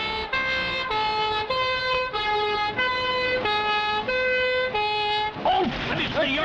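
Two-tone police siren switching back and forth between a higher and a lower note about every half second, stopping about a second before the end.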